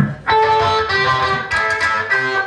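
Electric guitar played through an amplifier: ringing chords struck about a quarter second in, with a change of notes about a second and a half in.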